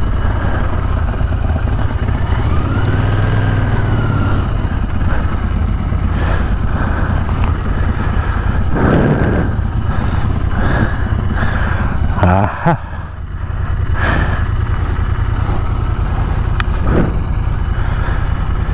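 Motorcycle engine running at low speed as the bike rolls off and rides slowly, picked up by a camera mounted on the handlebars.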